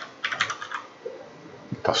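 Typing on a computer keyboard: a quick run of keystrokes that stops about a second in.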